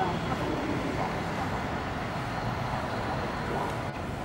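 Steady low background rumble with faint voices.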